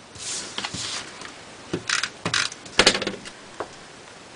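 Cardstock pieces being handled and stuck together with adhesive: several short rustles and light clicks, with a sharper click about three seconds in.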